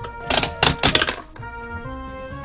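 Turning knob of an orange plastic toy candy machine making a quick run of sharp plastic clicks and clacks, from about a third of a second in to just past a second, over background music.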